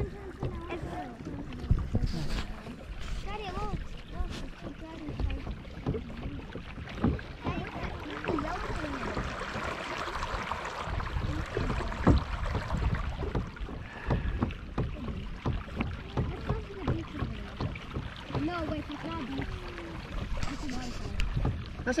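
Water sloshing against a moving kayak's hull on a lake, with occasional knocks on the hull and wind rumbling on the microphone. The water noise swells around the middle.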